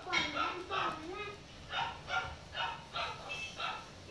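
A cocker spaniel puppy gives a quick series of short, high yips and barks, about two or three a second, with a person's voice mixed in.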